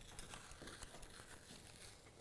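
Faint crackling and small ticks of a thin kiss-cut strip of fabric-covered lampshade PVC being gently lifted and peeled away from the panel.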